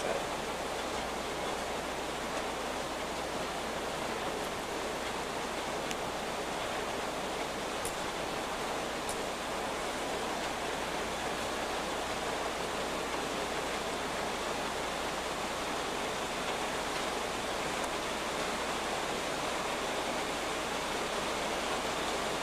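Steady, even hiss of background recording noise, with a couple of faint ticks about midway.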